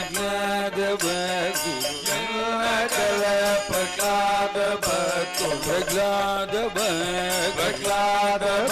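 A group of men singing a devotional bhajan together in Carnatic style, a lead voice joined by the chorus, over a steady drone.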